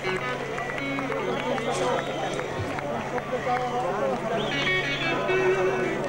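Live concert hall between songs: audience voices calling and talking, with short held notes and a steady low hum underneath.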